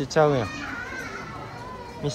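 A young child's voice: one short exclamation falling in pitch at the very start, then only lower background crowd noise.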